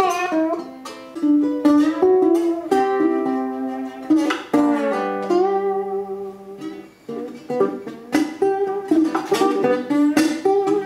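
Handmade ukulele fingerpicked solo: a run of plucked single notes and chords ringing out, with a few strums across the strings. About five seconds in, a low note is held for roughly two seconds under the picking.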